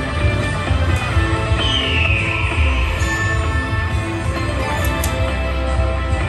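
Buffalo Ascension slot machine playing its free-games bonus music while the reels spin, with a descending tone about two seconds in.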